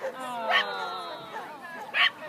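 A dog barking excitedly on an agility course: a sharp bark about half a second in and another at the end, with a long drawn-out call falling slowly in pitch between them.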